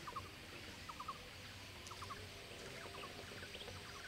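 Faint outdoor ambience with birds calling: short chirps in quick twos and threes, repeated every second or so.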